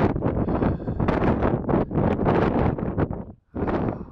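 Strong wind buffeting the camera microphone in loud, uneven gusts, dropping out briefly near the end.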